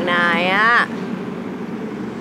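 A woman's voice says one short phrase in Thai, rising and then falling in pitch, then stops; a steady background hiss continues beneath it.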